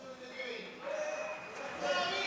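Indistinct voices of people talking and calling out, getting louder near the end.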